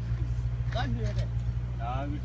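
An engine running steadily with a low, even hum, with indistinct voices talking over it twice.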